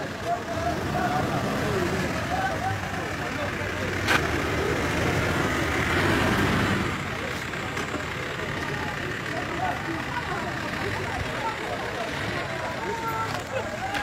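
An ambulance's engine running as it pulls in among a crowd, louder for a few seconds mid-way, with people's voices around it and a sharp click about four seconds in.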